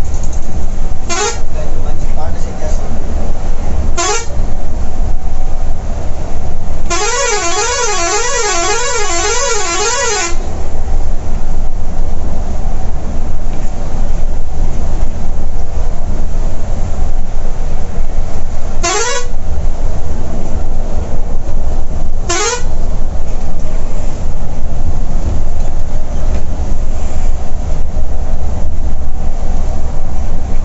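Steady low drone of a Volvo B11R bus's inline-six diesel and road noise heard from inside the cabin at highway speed. A horn sounds over it: two quick upward whoops near the start, a warbling tone rising and falling about twice a second for some three seconds, then two more whoops about two-thirds of the way through.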